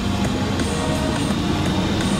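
Garbage truck engine and road noise heard from inside the cab while driving, a steady low rumble.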